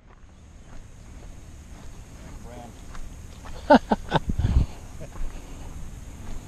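Quiet outdoor ambience at a lake shore with faint scattered ticks. About four seconds in there is a brief distant voice-like call that falls in pitch, followed by a short low rumble.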